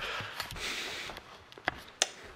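Rustling and soft knocks from a handheld camera being carried, then one sharp click near the end.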